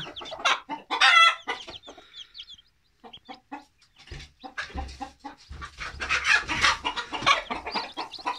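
A brood of newly hatched chicks peeping: many short high cheeps in quick runs, with a brief lull about two and a half seconds in. A few dull low bumps sound in the middle.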